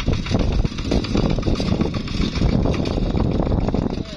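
Two-wheel walking tractor's single-cylinder diesel engine running steadily under load as it pulls a disc plough through wet paddy soil.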